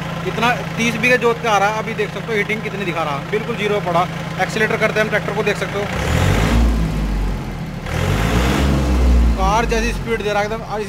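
A 36 hp John Deere 3036EN compact tractor's diesel engine runs steadily at idle, with voices in the background. About six seconds in, a louder low rumble with hiss takes over for most of the rest.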